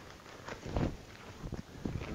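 A cloth apron rustling as it is pulled over the head and tied on, with soft thumps and a few light clicks. The loudest thump comes a little under a second in.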